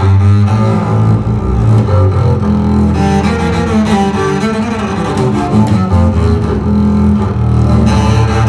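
Schnitzer double bass with gut strings played arco: a slow line of long, held low notes that change pitch every second or two, entering louder at the very start.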